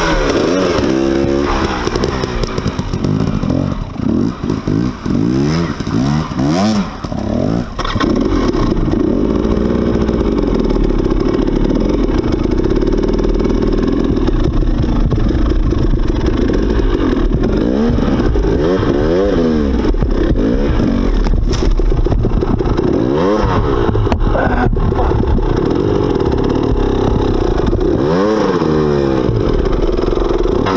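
Dirt bike engine revving up and down under the throttle as it is ridden over rough trail. The throttle is chopped on and off for the first several seconds, then held more steadily, with repeated rising revs.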